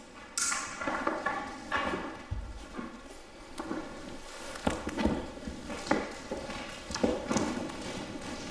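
Scattered knocks and scuffs of a climber's hands and climbing shoes on the holds and panels of an indoor climbing wall, several single knocks a second or so apart, over a faint steady hum.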